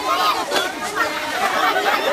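A crowd of people talking at once: many overlapping voices in steady chatter.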